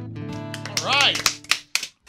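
The final acoustic guitar chord rings out and fades. About a second in there is a short whoop from a listener, followed by a few sharp, separate claps as the song ends.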